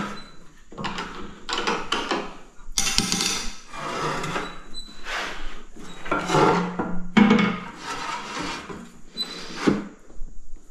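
A large black tile being slid and positioned on a Sigma manual tile cutter: repeated scrapes and knocks of the tile against the cutter's bed and rail, with a longer scratching scrape about three seconds in.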